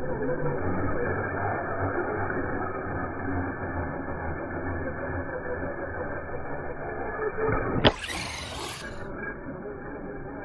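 Electric RC monster trucks running and jumping on skatepark concrete, heard dull and muffled, with a single sharp knock about eight seconds in, the loudest moment.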